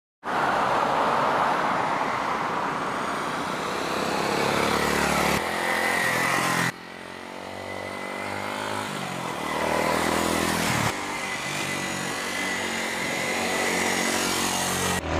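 Suzuki Grasstracker Big Boy's single-cylinder engine heard from the roadside as the motorcycle rides toward and past, its note rising and falling, in several short shots that cut abruptly about five, seven and eleven seconds in.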